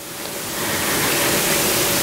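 Poetry-slam audience snapping fingers in appreciation of a line, a dense patter that builds over the first second and then holds steady.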